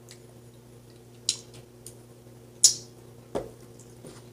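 Lips smacking and popping after a spoonful of supplement: a few short wet pops, the loudest a little past halfway, then a dull knock near the end.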